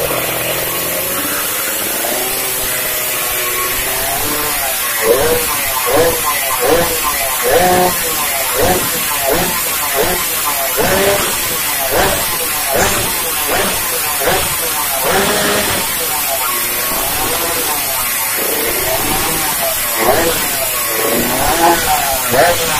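Race-tuned Suzuki Satria two-stroke underbone engine running through its exhaust. From about four seconds in the throttle is blipped over and over, about one and a half times a second, the pitch rising and falling with each rev.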